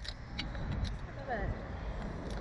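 Wind rushing over the onboard microphone of a Slingshot ride capsule as it swings through the air, a steady low rumble with scattered clicks. Near the end there is a brief wavering vocal sound from the rider.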